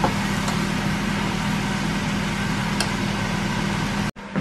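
Chow mein noodles sizzling in a nonstick frying pan as they are stirred, a steady hiss over a steady low hum, with a couple of faint clicks of the utensil against the pan.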